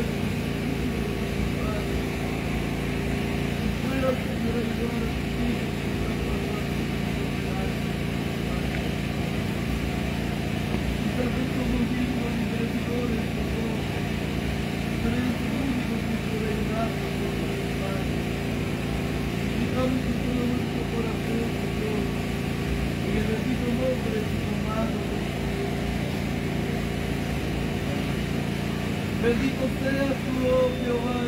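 Indistinct voices of people praying aloud over a steady low hum.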